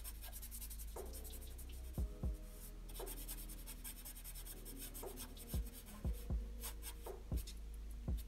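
A black felt-tip marker scratching on paper in a series of short, irregular strokes as a dark shadow is filled in.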